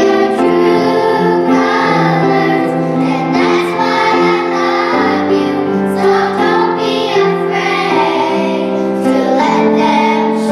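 A group of young girls singing a pop song together in unison and harmony, holding long notes.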